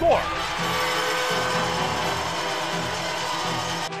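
An ice hockey arena crowd cheering after a goal, a steady roar over background music, with the end of a commentator's shout of "score" at the very start.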